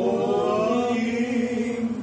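A male vocal group holding one long sung note in harmony, fading out near the end.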